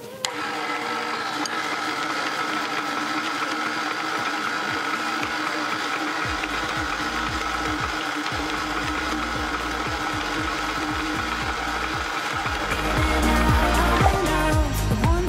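KitchenAid tilt-head stand mixer switched on at low speed just after the start, then running steadily with a motor whine while it creams butter and sugar is poured in gradually. Background music plays alongside, with a bass line coming in about halfway.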